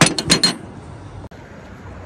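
Heavy steel slab-lifting clamps set down on a perforated metal plate: a quick run of four or five metallic clinks and clanks in the first half second.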